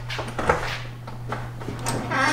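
Two short, sharp knocks, one about half a second in and one near the end, over a steady low hum.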